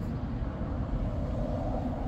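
Street traffic: the steady noise of cars passing on the road, swelling slightly in the second half.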